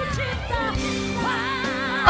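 A woman singing high, sustained notes with wide vibrato over held instrumental chords, in a live talent-show ballad performance; the vibrato-laden note enters about half a second in.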